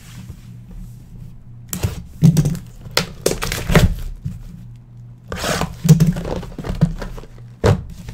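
A sealed trading-card box being opened and unpacked by hand: plastic shrink-wrap crinkling and tearing, and cardboard boxes knocking onto a desk mat in several short bursts, with a sharp knock near the end.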